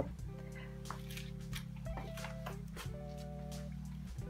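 Soft background music: sustained held chords that change every second or so.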